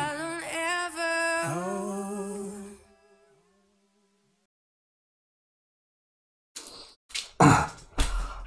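Sung vocal of a hip-hop track's hook, held notes that fade out about three seconds in, followed by silence. Near the end come a few short, brief noises.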